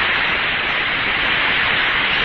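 Steady hiss of radio static on an open air-to-ground voice channel, with no words, heard between transmissions.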